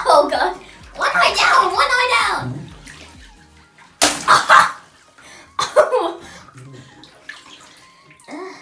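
Water balloons bursting in a tub packed with water-filled balloons, each a sudden pop and splash of water: one at the start, one about four seconds in and another near six seconds. A child's voice sounds between the bursts.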